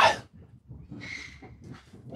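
A man's spoken word ends, then a pause holding a faint, short, breath-like hiss with a slight whistle about a second in, typical of an inhale between phrases.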